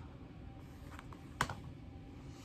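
Plastic Blu-ray cases being handled: a couple of faint clicks about a second in, then one sharp click a little later, over low room hum.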